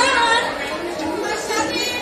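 Speech: an actor delivering stage dialogue in a play.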